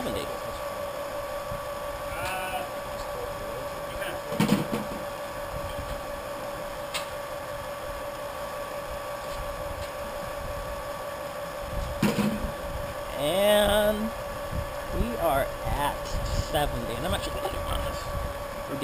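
Small electric wort pump running with a steady whine as it pushes wort through a plate chiller. Voices talk faintly now and then, most about 12 to 17 seconds in.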